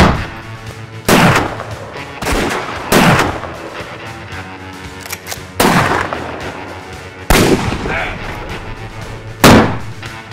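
A gunfight with revolvers and a long gun: about seven single shots, spaced unevenly a second or two apart, each trailing off in an echo.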